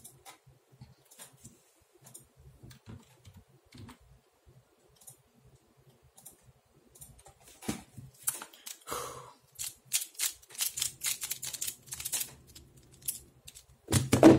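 Light, scattered plastic clicks, sparse at first, then from about halfway a denser run of clicks and clatter as plastic pyraminx puzzles are picked up, set down and turned on a desk mat. The early clicks fit a computer mouse being clicked.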